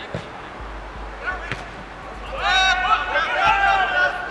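Outdoor football match: a couple of sharp ball kicks early on, then players shouting and calling out across the pitch, loudest in the second half.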